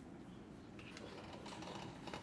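Faint quick clicking and tapping, like keys being typed, starting about a second in over a low steady room hum.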